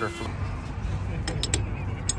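Low, steady outdoor rumble with a few short, light clicks about one and a half seconds in.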